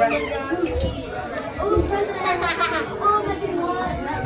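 Several children talking and exclaiming over one another in excited chatter.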